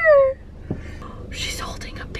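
A high-pitched laugh trails off just after the start. A single dull thump follows, then breathy whispering, all over the low hum of a car cabin.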